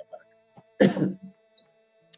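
A man clearing his throat once, a short sharp rasp about a second in, with faint steady tones underneath.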